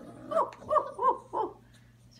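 Five-week-old basset hound puppy whimpering: a few short, high whines in quick succession.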